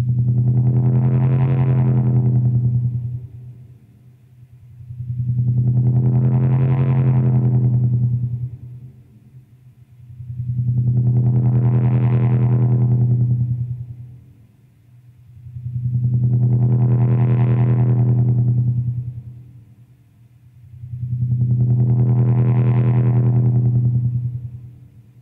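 Opening of a screamo/post-rock track: a distorted electric guitar chord, heavy with effects, swells up and fades away five times in a row, about every five seconds.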